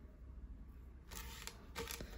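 Faint handling noise of a small plastic LEGO brick build in the fingers: a light rustle with a few soft clicks, starting about a second in.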